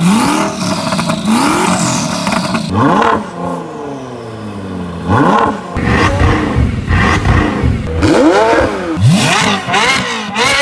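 A rapid series of supercar engine revs cut together from different cars, including the Ford GT, Bugatti Chiron and Ferrari 458 Speciale, each a short blip of the throttle rising and falling in pitch, with abrupt changes in sound between clips.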